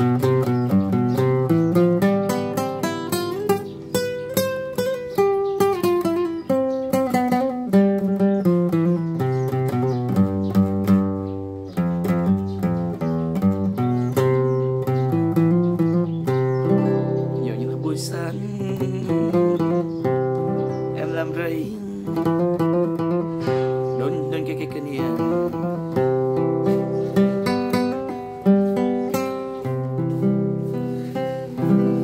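Nylon-string classical guitar played fingerstyle in C major: a Central Highlands (Tây Nguyên) style melody on a five-note pentatonic scale, plucked notes running continuously over a repeating bass.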